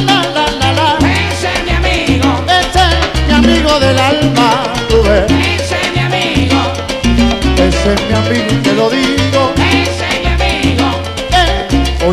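Live salsa band playing an instrumental passage, driven by a strong upright bass line of repeated low notes.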